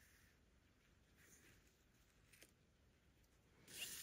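Near silence, with faint handling of paper card pieces: a light tick a little over two seconds in and a brief rustle near the end.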